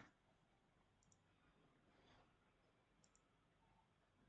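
Near silence with a few faint computer-mouse clicks.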